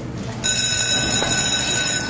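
A steady high-pitched electronic tone with overtones. It starts abruptly about half a second in, holds one pitch and cuts off after about a second and a half.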